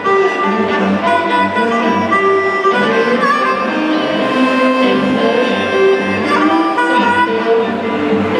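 Live blues band playing: an amplified harmonica holds long notes over electric guitars, bass, keyboard and drums.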